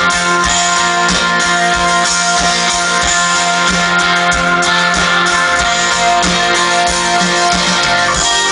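Live rock band playing an instrumental passage with no vocals: sustained keyboard chords and guitar over a regular low beat.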